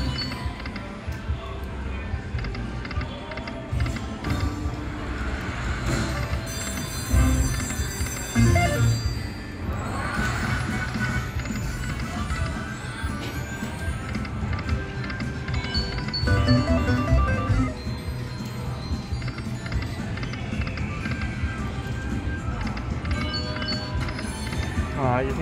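Buffalo Gold video slot machine's game sounds through several spins in a row: jingly reel-spin music and reel-stop tones over a steady casino background din.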